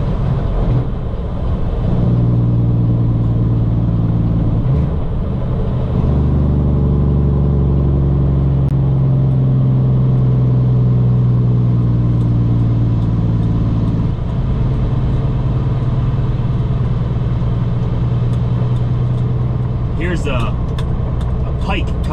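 Semi truck's diesel engine droning steadily, heard inside the cab on the highway with road noise, its note shifting a few times as the load changes. A voice starts near the end.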